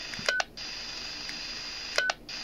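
Baofeng K6 handheld radio giving a steady hiss of receiver static from its speaker. A short keypad beep sounds about a third of a second in, the hiss cuts out for a moment and then comes back, and a second beep comes at the very end.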